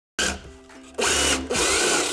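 Electric drill with a wide bit boring into a plywood box, running in two short bursts about a second and a second and a half in, over background music.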